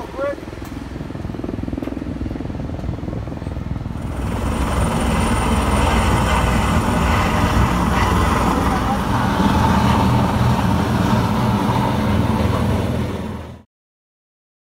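Helicopter turbine and rotor running, a steady rumble with a whine above it. It grows louder about four seconds in and cuts off suddenly near the end.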